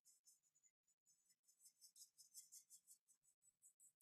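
Near silence with faint strokes of a paintbrush on paper, a short run of them in the middle, as wet gouache is worked into a blended sky.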